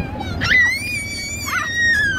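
A child's long high-pitched squeal, held for about a second and a half with a slight rise and fall in pitch, over the low rumble of a golf cart driving on a dirt road.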